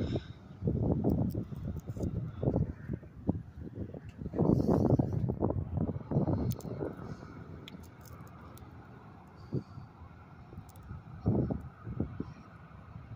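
Footsteps and handheld camera handling noise as a person walks across a tiled floor. The low thumps and rumbles are irregular and stop about seven seconds in, leaving only a couple of soft bumps.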